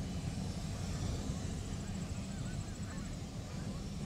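Distant diesel freight locomotives pulling a cut of covered hopper cars, a steady low rumble. A few faint bird calls come in over it about halfway through.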